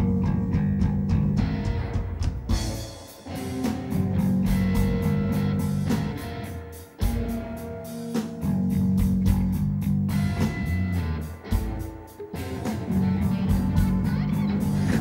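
Live rock band playing an instrumental passage: an electric bass guitar riff repeats in phrases about every four seconds, with short breaks between them, over drum and cymbal hits and guitar.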